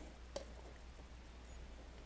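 A single short click about a third of a second in as a piece of sheet tin is handled against a camcorder, then faint handling noise over a low steady hum.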